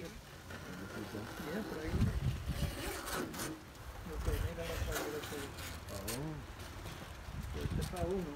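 Quiet talking, mostly not made out in words, with some low rumbling noise at times.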